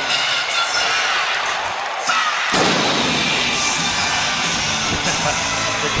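Hockey arena crowd cheering and clapping after a home goal. About two and a half seconds in comes a sudden loud boom from the arena's goal cannon, and the din swells after it.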